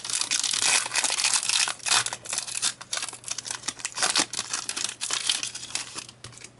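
Foil Pokémon booster pack wrapper crinkling and tearing in the hands as the pack is opened. The dense crackle thins out near the end.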